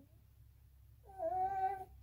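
A short, drawn-out, high vocal sound from a young girl, held for just under a second about a second in, with a steady pitch that rises slightly at its start.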